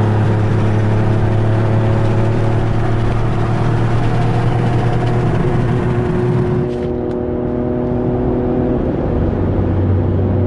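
Steady engine drone and road noise heard inside a car's cabin while cruising at highway speed, an even low hum with overtones under a hiss. The hiss quietens about seven seconds in.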